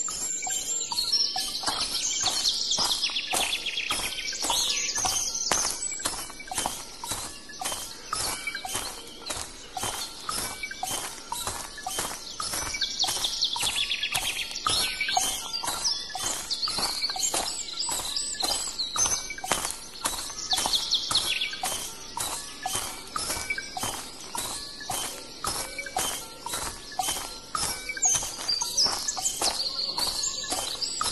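Produced soundscape of bird chirps and calls over a steady tapping, about two taps a second.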